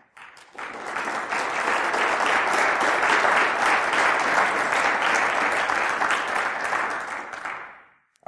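Audience applauding: many hands clapping together, building up about half a second in and dying away near the end.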